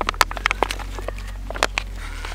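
Filtered water spurting and dribbling from a freshly back-flushed Sawyer Mini Squeeze filter into a plastic water bottle, heard as a run of irregular splashy ticks.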